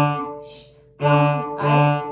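Cello bowing short detached strokes on its open D string in the 'ice cream, shh, cone' rhythm, all at one pitch. A stroke fades into a brief rest, then a new stroke starts about a second in and another just over half a second later.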